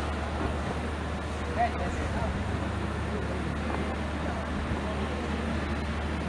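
Outdoor ambience: indistinct distant voices over a steady low hum.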